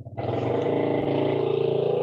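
A steady engine drone of even pitch that starts just after the start, heard through an open microphone on a video call.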